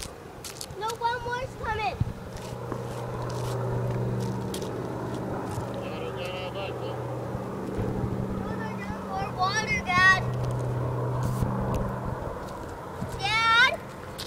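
Propeller engines of a firefighting aircraft droning overhead, a steady low hum that swells and fades twice. Short high voice calls break in briefly a few times.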